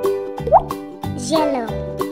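Children's background music on an electronic keyboard, with a short rising cartoon 'bloop' sound effect about half a second in and a falling voice-like glide in the second half.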